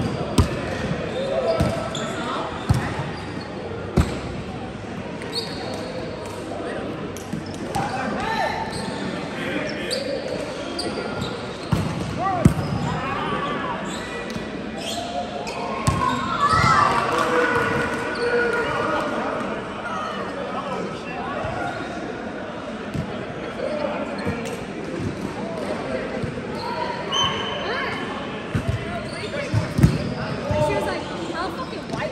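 Volleyball being played in a large indoor hall: sharp slaps of the ball being hit and landing, a few seconds apart, among players' calls and chatter that echo around the hall.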